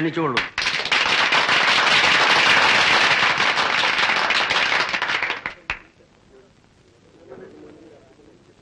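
A string of firecrackers going off in rapid crackling for about five seconds, ending with one sharp bang.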